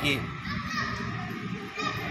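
A man's sung devotional chant ends a line, then pauses, leaving faint background voices. His singing starts again near the end.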